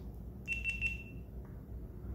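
GoPro Hero7 Black action camera's power-on signal: three quick, high-pitched electronic beeps about half a second in, as the camera switches on.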